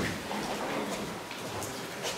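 Papers rustling and light shuffling, with a few soft clicks.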